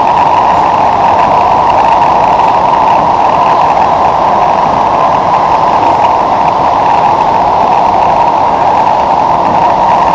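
Steady running noise of a Singapore MRT train heard from inside the passenger car: a loud, even rumble and hum of wheels on rail and running gear, holding level throughout.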